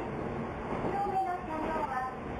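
A local train running, heard from inside the carriage: a steady rumble of wheels and running gear. Over it, the recorded onboard announcement ends ('...please get off by the front door') and a voice carries on.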